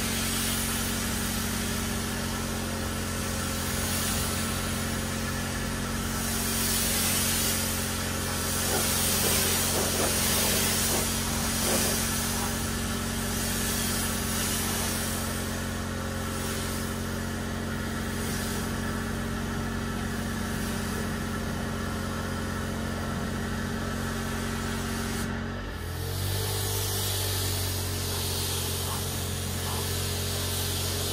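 Pressure washer running steadily, its pump motor humming under the hiss of the water spray as it rinses the car, the hiss swelling and easing as the jet moves. About 25 seconds in the hum briefly drops and settles at a different pitch.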